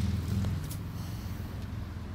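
Low hum of a motor vehicle's engine, fading away within the first second and leaving faint background noise with a couple of light clicks.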